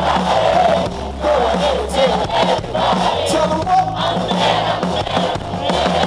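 Live band music over a concert PA, with steady bass notes, under a large crowd shouting and singing along.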